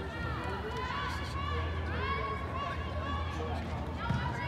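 Voices shouting and calling across an indoor soccer field during play, short rising-and-falling calls coming several times a second, over a steady low hum.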